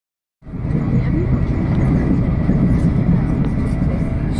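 Steady running rumble of an electric InterCity 225 train at speed, heard inside a passenger coach: wheels on rail and the body noise of the carriage, cutting in about half a second in.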